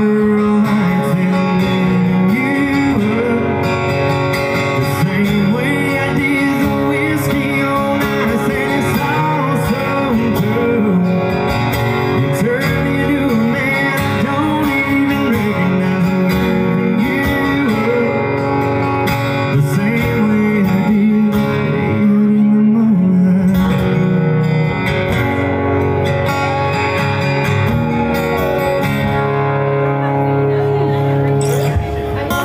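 Live acoustic duo: two acoustic guitars playing with a man singing into a microphone, steady and continuous.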